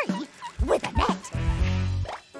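Cartoon soundtrack: children's music with a steady beat, with two short rising yelp-like calls near the start and about a second in. A held low note follows near the end.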